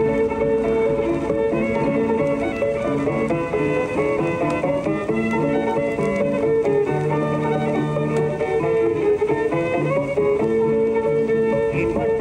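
Instrumental music playing steadily from a radio.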